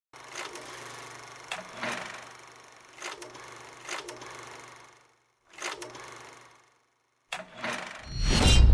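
Old-film projector sound effect: a steady low hum under scattered crackles and clicks. It cuts out briefly twice, around five and seven seconds in.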